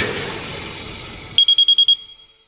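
Background music dying away, then a rapid run of about seven short, high electronic beeps near the end, like an alarm-clock beeper.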